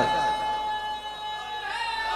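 Steady high ringing tone from the loudspeaker system, with the amplified voice of the preacher echoing away at the start.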